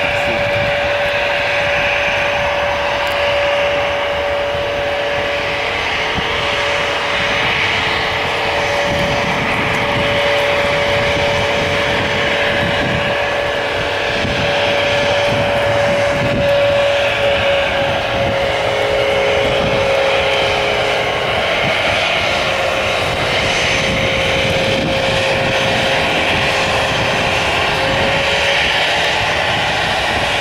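Airbus A321-211's CFM56 turbofan engines running while the airliner taxis: a steady jet whine over a broad rushing noise and low rumble. The whine shifts slightly in pitch about halfway through and again near the end, and a second, lower whine joins it for a few seconds.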